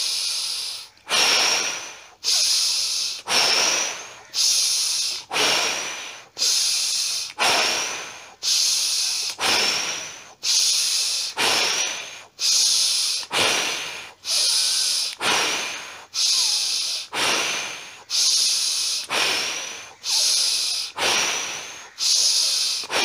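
A man's forceful breathing exercise: deep breaths drawn in through the nose and blown out through lips rounded in an O, in a steady rhythm of about one loud breath sound a second. The breaths are picked up very close by a clip-on microphone.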